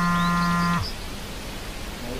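A short steady buzzing tone, under a second long, that drops in pitch as it cuts off, followed by quieter background noise.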